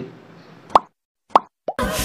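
Three short pitched pop sounds about half a second apart, with dead silence between them, then loud background music starts near the end.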